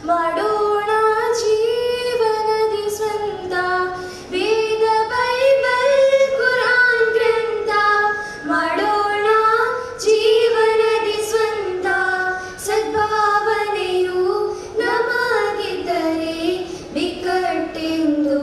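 Girls singing a melodic song together into microphones, with held, gliding notes.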